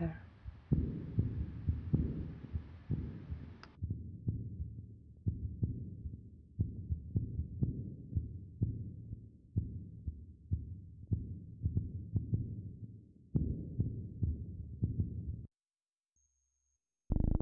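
A low, heartbeat-like thumping pulse repeating roughly once a second, with a faint hiss over the first few seconds. It cuts off suddenly shortly before the end.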